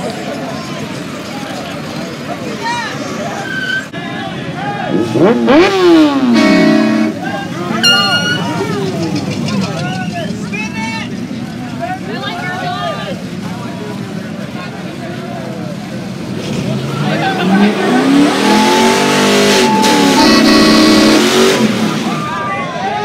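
Car engines revving hard over crowd chatter. A short rev rises and falls about five seconds in. Near the end a longer, louder rev climbs, holds and drops under a hiss of spinning tyres as a car does a burnout.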